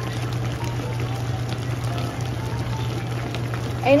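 Fish and vegetables simmering in vinegar broth in an open pan, a fine bubbling crackle over a steady low hum.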